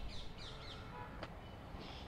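Faint bird chirps: short, falling calls repeated several times in the first half and again near the end, over low background noise.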